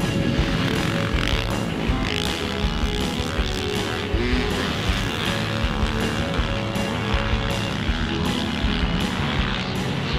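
A Yamaha YZ450F's 449cc single-cylinder four-stroke motocross engine revving up and down as the bike is ridden hard, under background music with a steady beat.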